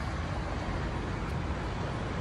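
Steady background noise: a low rumble under an even hiss, with no distinct events.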